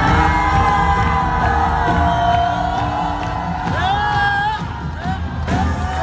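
Live band and singers holding a final sustained note as a song ends, with the crowd cheering and whooping over it. The loudest whoops come about four seconds in.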